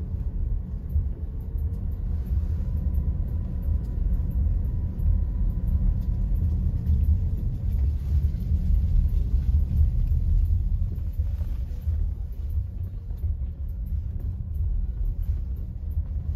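Car's engine and tyres running steadily, heard as a low rumble from inside the cabin while driving.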